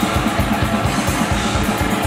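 Death/thrash metal band playing live: distorted electric guitars over fast, steady kick-drum beats.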